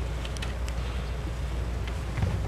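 Room noise: a low steady rumble with a few faint clicks and rustles, no music or speech.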